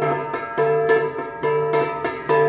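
Gangsa, flat bronze gongs, struck in a steady dance rhythm of about two to three strokes a second, each stroke ringing on with a bright metallic tone.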